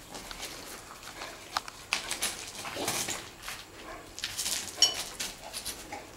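A young red-nose pit bull sniffing and nosing at an iguana on loose rubble, with scattered scuffs and small clicks from paws and debris. A brief high squeak comes about five seconds in.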